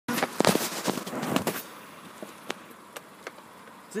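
Handling noise from a phone as it is moved and set in place: dense crackling rubbing and knocks on the microphone for about a second and a half, then a few faint separate clicks.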